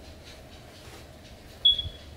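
A short, sharp high-pitched squeak with a low thump beneath it, near the end of an otherwise quiet stretch.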